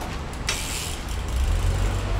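A sharp metallic clack about half a second in as a BMX bike is lifted off concrete, followed by a hiss. From about halfway through, a low steady rumble builds.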